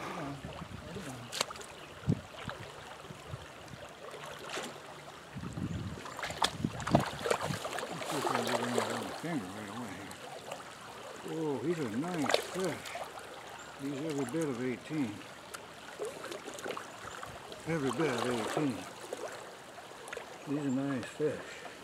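Shallow creek water running and sloshing around a wading angler landing a hooked brown trout, with scattered sharp splashes and knocks in the first half. A man's voice sounds in short wordless stretches through the second half.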